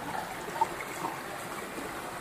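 Shallow mountain torrent running over rocks: a steady rushing of water, with small gurgles now and then.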